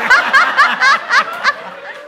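A burst of high-pitched laughter in quick ha-ha pulses that dies away about a second and a half in.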